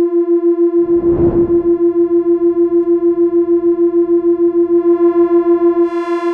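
An EML 101 vintage analog synthesizer holding one steady note, its level pulsing about seven times a second. A short burst of hiss comes in about a second in, and the tone turns brighter near the end.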